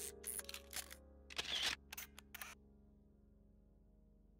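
Outro logo-animation sound effects: several sharp clicks and a longer whoosh in the first two and a half seconds, over a held musical chord that then fades to faint.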